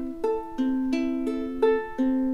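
Ukulele fingerpicked arpeggio over fretted chords: single strings plucked one after another, about three notes a second, each left ringing into the next.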